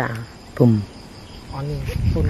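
Crickets chirring steadily in a high, unbroken tone behind a man's storytelling voice, which speaks in short bursts.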